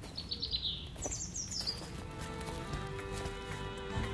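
Small birds chirping: two quick runs of high, falling chirps in the first two seconds. Then soft background music with long held notes fades in.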